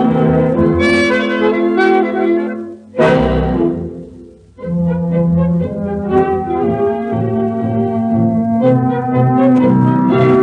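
A dance orchestra playing a tango, transferred from a 78 rpm record. About three seconds in, the band hits a short accented chord and drops to a near pause for about a second before picking up again.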